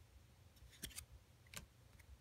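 Near silence with a few faint clicks as a hand slides a Topps baseball card off the front of a stack of cards.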